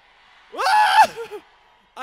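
A loud shouted vocal call about half a second in, lasting about half a second, after a faint hum of background noise.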